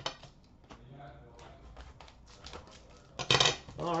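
Trading cards and card boxes handled on a glass counter: a run of light clicks and taps, with a louder cluster of handling noise about three seconds in.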